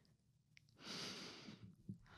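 Near silence, broken about a second in by one faint, soft breath out into a close microphone, as a person settles into a guided eyes-closed relaxation exercise.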